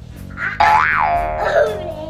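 A cartoon 'boing' sound effect a little over half a second in: a springy tone whose pitch rises and falls once, then fades, over steady background music.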